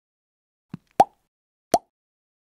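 Short click-pop sound effects of an animated end-card cursor clicking the like and subscribe buttons: a faint tick, then two sharp pops about three-quarters of a second apart.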